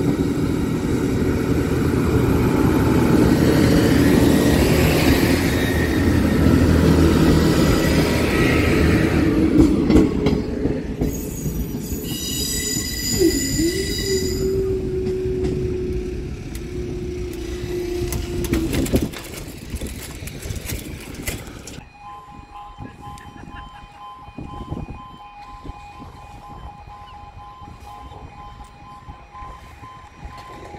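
A Class 158 diesel multiple unit runs over a level crossing: engine and wheels on the rails, loud at first and fading away by about 19 s, with a high squeal from the wheels a little before halfway. From about 22 s the crossing's warning alarm sounds, two steady tones, as the barriers begin to lower.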